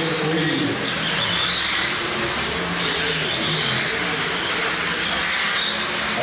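Several radio-controlled sprint cars racing on an indoor dirt oval, their motors whining high, the pitch rising and falling as they accelerate and back off through the turns, over a steady hiss of tyres on the dirt.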